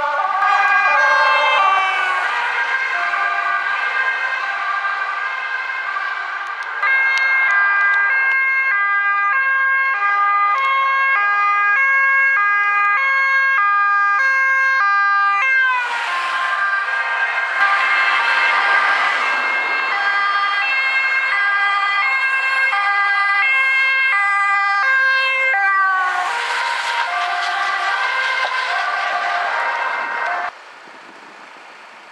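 Emergency-vehicle two-tone sirens, several sounding at once and out of step, each switching between a high and a low note about once a second. A vehicle rushes past close by about halfway through and again near the end.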